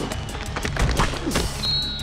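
Background music with a steady beat, and near the end a short, steady blast on a coach's whistle.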